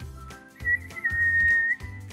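A person whistling through pursed lips: a short high note, then one longer steady note at about the same pitch. Background music runs underneath.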